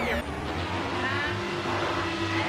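Music playing through a pitch-shifter audio effect, its tones sliding and wavering in pitch as the shift changes, over a steady low drone.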